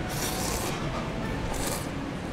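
Crunching from someone chewing a crispy deep-fried pork chop, in short rasping bursts about once a second.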